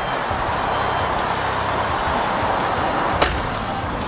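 Steady rushing roadside noise beside a freeway jammed with stopped trucks and cars, with one sharp click about three seconds in.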